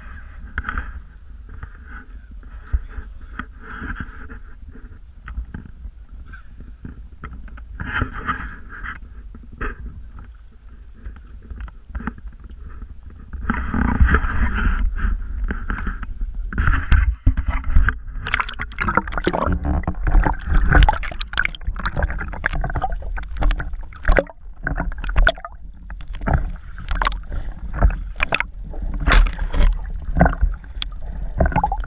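Water sloshing around a small boat hull over a low wind rumble on the microphone. About halfway through it gets louder, with frequent sharp splashes and knocks as a hooked pike is brought to the boat and netted.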